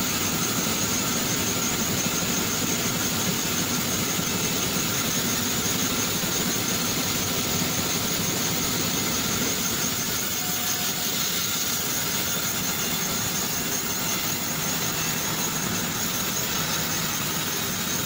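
Large vertical band saw running steadily as a date palm trunk is fed through its blade, a continuous sawing noise with a steady high whine.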